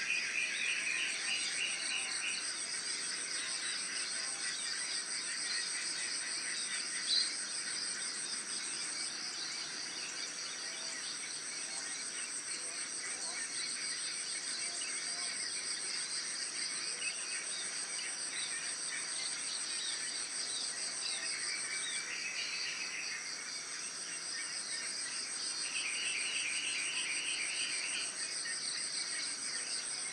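Insects calling steadily: a continuous high-pitched trill typical of crickets, with a second fast-pulsing chirr beneath it. Short bursts of lower, pulsed chirping come in at the start and twice in the second half.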